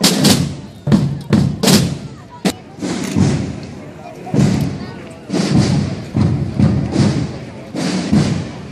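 Procession marching drums beating a slow, uneven pattern of loud strikes, roughly two a second, each ringing on briefly.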